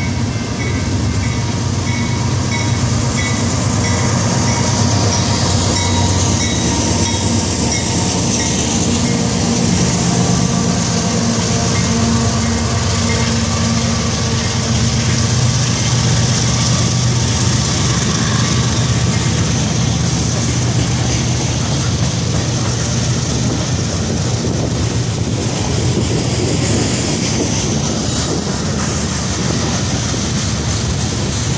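A freight train passing close by: BNSF GE Dash 9 diesel locomotives running by, then a long string of covered hopper cars rolling past with a steady rumble and clickety-clack of wheels over rail joints.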